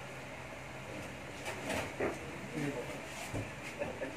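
Indistinct voices of people talking in the background over a steady hum, with a couple of faint knocks.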